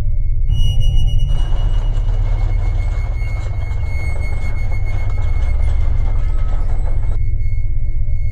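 Soundtrack music with a low drone and a steady high tone. About a second in, the mechanical whirr and rumble of a small robot rolling on its tank treads starts and runs over the music, cutting off suddenly near the end.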